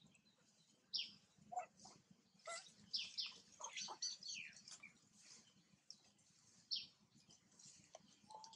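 Faint bird chirps: short high calls sliding downward in pitch, one about a second in, a quick run of them in the middle and one more near the end.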